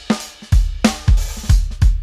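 Soloed multitrack drum-kit recording playing back in a steady beat: kick drum thumps, snare hits and cymbals. It runs through a Neve-style channel strip plugin, with the kick compressed by about two or three dB.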